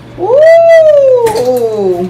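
A pet's single long, drawn-out call, meow-like: it rises quickly, then slides slowly down in pitch for almost two seconds.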